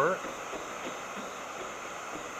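Electric heat gun (Wagner HT1000) running, its fan blowing hot air with a steady hiss while it heats old paint ahead of the scraper to lift it off.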